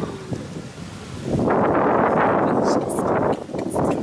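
Wind buffeting the phone's microphone: a loud, rough rumbling noise that starts about a second and a half in and carries on.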